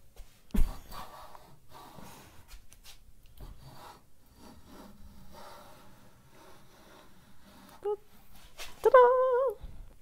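A sharp knock, then a fenced rabbet plane pushed along a board edge in slow strokes, cutting a rabbet. Near the end there is a short, high voiced sound that bends in pitch.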